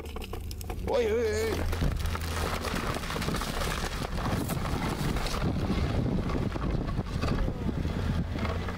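A car engine running under load as the wheels spin and throw snow, with a steady low hum and a noisy rush of wheel spin and wind on the microphone. A voice calls out briefly about a second in.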